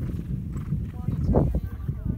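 Horse hoofbeats on grass, with voices in the background.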